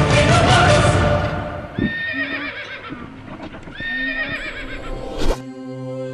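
Loud music fills the first second. Then a horse whinnies twice, each call about a second long with a wavering pitch. A sharp hit comes near the end as new music starts.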